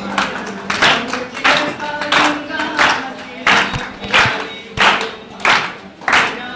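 A group singing along to an acoustic guitar, with hand claps keeping time at about one and a half claps a second.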